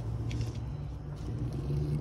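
Steady low rumble of an idling truck engine.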